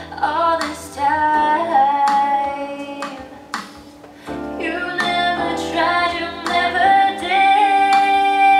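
An R&B-style song with a female lead vocal singing held, sliding notes over an instrumental backing. The voice drops away briefly a little past the middle, then comes back on a long sustained note.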